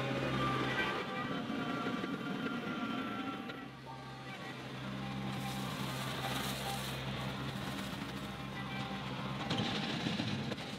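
Background music over a John Deere 2038R compact tractor's diesel engine running steadily. About five seconds in comes a brief hissing rush, fitting loose driveway stone pouring out of the raised loader bucket onto gravel.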